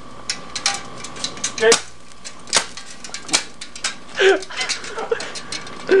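Irregular sharp snaps and crackles of electrical arcing, 110 V mains current sparking against an aluminium pop can and burning holes in it, with a few louder cracks among quick small clicks.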